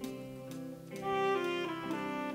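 Brass band music: sustained wind chords moving from note to note over a light tick about twice a second.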